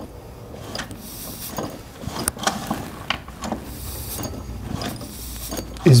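Clutch drum and rim sprocket of a Stihl 066 chainsaw turned by hand, giving scattered light clicks and small rattles of metal parts.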